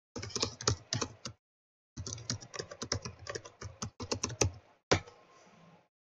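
Typing on a computer keyboard: a quick run of key clicks, a pause of about half a second, a longer run, then one separate keystroke near the end.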